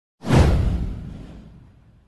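Whoosh sound effect from an animated title intro: a sudden swoosh with a low boom under it, sweeping downward in pitch and fading out over about a second and a half.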